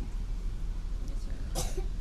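A pause in a boy's recitation: a steady low hum from the microphone and room, with one short breathy throat sound from him near the end.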